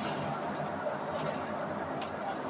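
Steady cabin noise of a Ford vehicle driving along a road.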